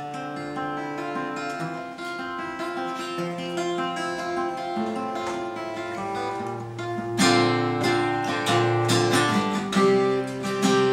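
Two acoustic guitars playing a song's instrumental intro. Single picked notes ring out at first; about seven seconds in, the playing turns to louder strumming.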